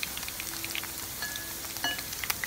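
Cornmeal-battered flounder fillet frying in hot oil in a stainless steel pan: a steady sizzle with many small crackling pops.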